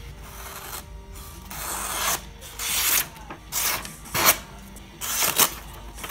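A Svord Peasant folding knife's steel blade slicing through a sheet of paper in a paper-cut sharpness test: about five short rasping strokes with the paper rustling. The sharpest stroke comes about four seconds in.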